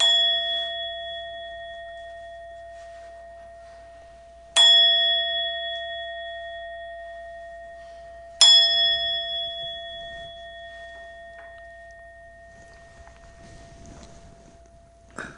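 A meditation bowl bell (standing singing bowl) struck three times, about four seconds apart. Each strike rings out with a clear, steady tone that slowly fades, and the last one rings on to near the end. Three strikes of the bowl bell are the customary signal that a dharma talk is beginning.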